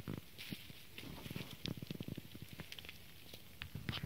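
Faint, irregular crackling and rustling of dry leaves, grass and twigs as someone moves through forest undergrowth down to the ground.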